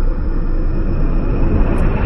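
Logo-intro sound effect: a loud, deep, steady rumble.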